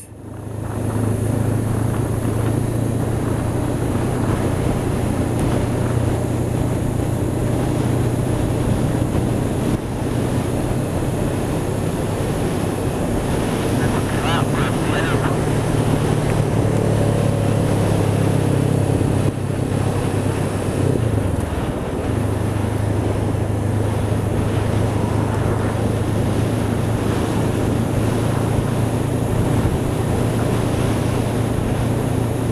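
Honda CB500X's parallel-twin engine running steadily under way, heard from on board with wind noise on the microphone. About two-thirds of the way through, the engine note drops for a couple of seconds and then picks up again.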